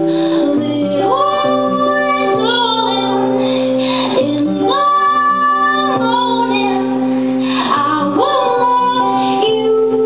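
A woman singing with an acoustic guitar. She slides up into long held notes about a second in, again about five seconds in and again near the end.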